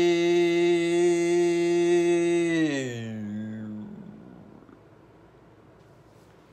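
A person's voice holding a long "eee" on one steady pitch, which slides down and trails off about three seconds in.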